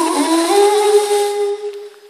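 A long held sung note that slides in pitch at first, then holds steady and fades out near the end, as a call before the drums come in.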